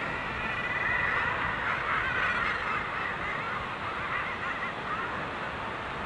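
Common guillemots calling in a crowded breeding colony: several overlapping calls that waver in pitch, over a steady wash of wind and sea noise.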